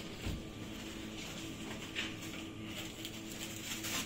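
Quiet indoor shop ambience: a steady low electrical hum, with a soft thump shortly after the start and a few faint handling rustles.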